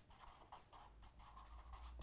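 Felt-tip marker writing on a paper pad: a quick run of faint, short scratchy strokes as letters are written.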